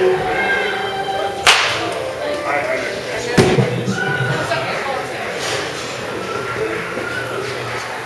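A wooden baseball bat hits a ball once with a sharp crack about a second and a half in. A duller, deeper thud follows about two seconds later. Music plays steadily in the background.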